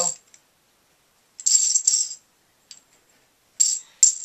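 Plastic Connect Four checkers clattering against each other as they are handled: a short rattle about a second and a half in, a small click, and another brief rattle near the end.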